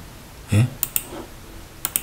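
A few light, sharp clicks in two quick pairs, one just under a second in and one near the end.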